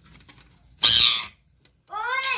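Pet parakeet giving one harsh squawk, about half a second long, about a second in.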